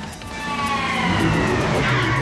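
High engine whine from a dune buggy, sliding slowly down in pitch as it grows louder, over background music.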